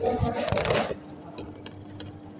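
A scraping rustle for about a second as a finger works the front-panel buttons of a Schneider EOCR 3DM2 relay, followed by a couple of faint clicks. A steady electrical hum runs underneath.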